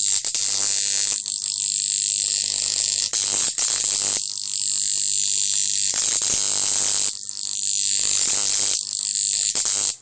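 High-voltage arc drawn between the electrodes of a 75 kV X-ray transformer run on about 40 volts: a loud, steady buzzing hiss with a high whine and a low hum beneath it, cutting off suddenly just before the end.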